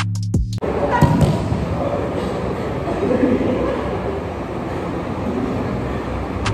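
Electronic background music with a drum-machine beat stops about half a second in. It gives way to live sound of two people grappling on a mat, with their movement, breathing and voices over a steady noise from the room.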